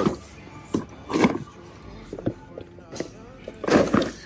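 A cardboard toy box with a plastic window handled on a metal store shelf: a few short rustling, scraping bursts, the loudest near the end, over faint background music.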